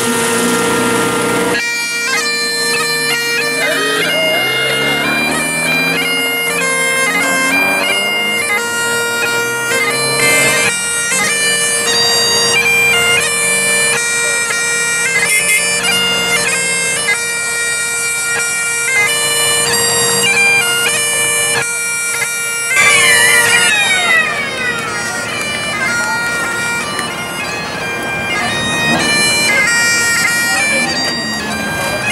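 Highland bagpipes playing a tune over a steady drone. About three-quarters of the way through, the drone cuts out and the notes slide downward in pitch, then piping carries on.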